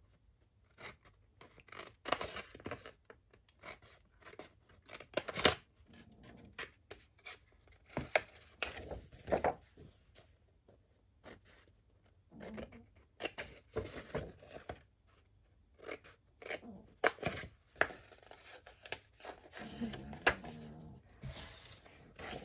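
Scissors cutting through a sheet of 12x12 scrapbook paper in short, irregular snips, with pauses between the cuts.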